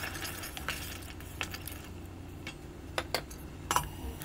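Wooden spoon stirring a thick vegetable purée in an enamel pot, with irregular light knocks and clinks against the pot's sides and a couple of sharper clinks near the end.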